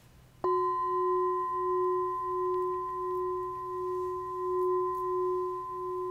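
A hand-held metal singing bowl struck once with a mallet about half a second in, then ringing on with a steady low tone and a higher overtone, the low tone pulsing slowly as it sustains.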